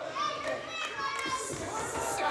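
Wrestling arena crowd voices: fans, some of them high-pitched like children, shouting and calling out at the action in the ring.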